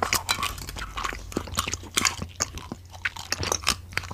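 Close-up crunchy chewing and biting: a dense, irregular run of sharp crunches and clicks with no break, over a faint steady low hum.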